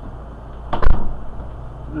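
A steady low hum, broken a little under a second in by one loud, sharp knock with a heavy bass thud, like the phone or its support being bumped.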